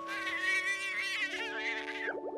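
A small cartoon creature's high, warbling squeak with a fast tremble, lasting most of two seconds, over held music chords.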